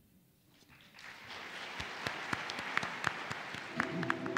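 Audience applauding, swelling in after a short hush about a second in and carrying on steadily as the talk ends.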